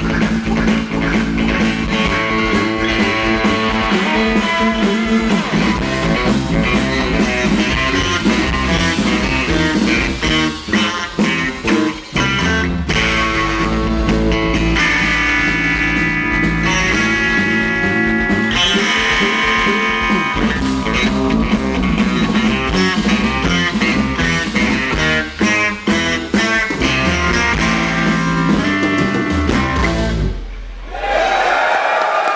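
Live rock band playing instrumental psychedelic rock: electric guitar over bass guitar and drums, loud and continuous with a couple of brief breaks.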